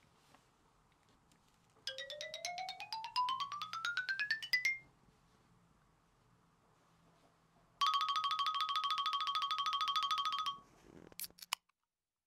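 Electronic sound effects. First comes a rapidly pulsing tone that rises in pitch for about three seconds. After a pause, a steady, rapidly pulsing electronic tone holds at one pitch for about three seconds. A short swish follows near the end.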